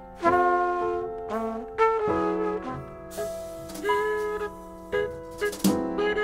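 Live jazz quartet: a trumpet plays held melody notes over piano, double bass and drums.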